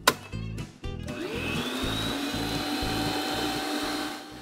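Electric stand mixer switched on with a click, its motor rising in pitch as it spins up over about a second and then running steadily while the flat beater creams butter, sugar and egg.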